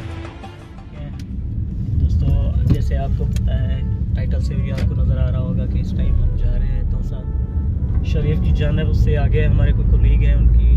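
Steady low rumble of a car heard from inside the cabin while it drives, setting in about a second or two in, with a man's voice over it.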